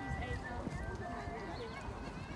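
Indistinct background voices over a steady low rumble, with a horse cantering across a sand arena.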